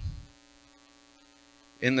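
Faint, steady electrical mains hum in the sound system's microphone feed, heard in a pause between a man's words; his voice trails off just after the start and resumes near the end.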